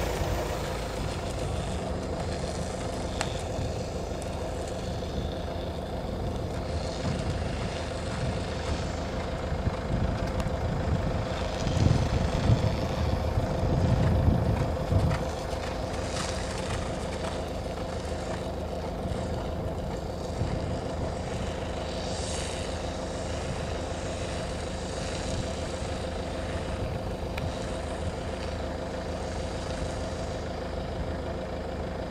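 A small engine runs steadily in the background, holding an even hum. Wind buffets the microphone in gusts of low rumble for a few seconds near the middle.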